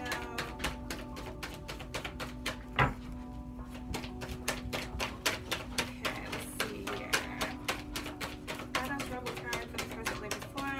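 A deck of tarot cards being shuffled by hand, a quick, uneven run of light card clicks and flicks with one sharper tap about three seconds in, over soft background music with long held tones.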